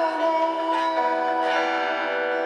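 A man singing with an acoustic guitar, holding a long note over a ringing chord.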